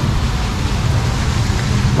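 Steady rushing and splashing of a small artificial rock waterfall, with a low rumble underneath.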